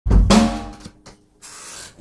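A drum kit struck hard once at the start, bass drum and snare with a cymbal that rings and dies away within about a second. A soft hiss follows near the end.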